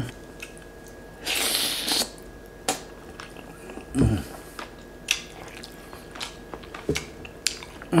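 A man eating lechon (whole roast pig) by hand, close to the microphone: a short loud crackle about a second and a half in as meat is torn off and bitten, then chewing with small wet clicks and lip smacks. A hummed 'mm' comes at about four seconds.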